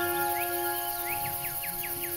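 Soft background music holding a slowly fading note, with a bird's quick run of short, falling chirps starting about a third of a second in.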